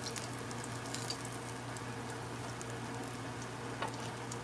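Hot oil sizzling steadily with fine crackling pops as battered calamari rings fry in a pan. A single click sounds just before the end.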